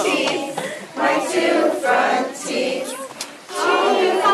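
A group of young children singing a song together, in short phrases with brief breaks between them.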